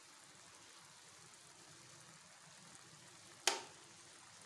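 Faint, steady sizzle of onion-tomato masala cooking in a stainless-steel pressure cooker. About three and a half seconds in comes a single sharp clink of a steel utensil against the pot.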